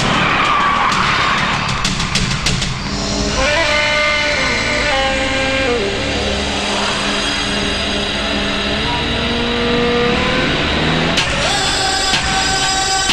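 A vehicle skidding to a halt on a road, with sharp drum hits over it. After about three seconds, background film score takes over with long held notes.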